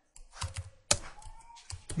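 Computer keyboard being typed on: about six separate keystrokes, spaced unevenly.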